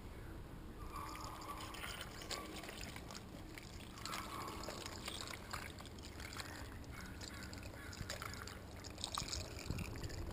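Bait brine being poured from a plastic bottle over cut-plug herring in a small plastic cooler: a faint, steady pour with small splashes and trickles.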